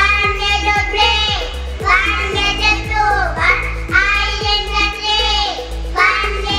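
Young children singing a song together into a microphone over backing music with a steady beat.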